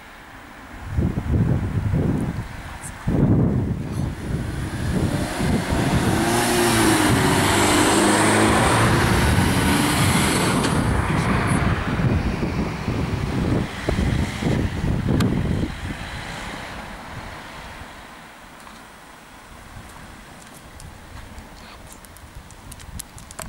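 A car driving past close by: engine and tyre noise comes up about a second in, is loudest around the middle with a gliding engine tone, and fades away after about sixteen seconds.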